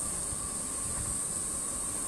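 Steady outdoor background noise at a railroad crossing: a constant high hiss over a low wind-like rumble. No crossing bell rings, as the crossing's electronic bell is broken.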